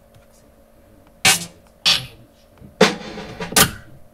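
Single electronic drum samples being triggered one at a time from a drum rack: four separate hits with sharp attacks at irregular spacing, starting a little over a second in, the third ringing on longer than the others.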